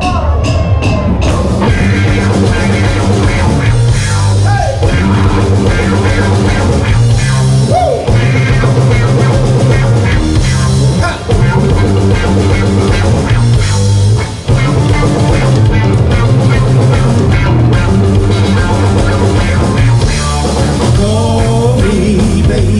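Live blues-rock band kicking into a song: drum kit, bass guitar, electric guitar and keyboard playing with a heavy bass line and a steady beat. The sound is picked up on a video camera's own microphone.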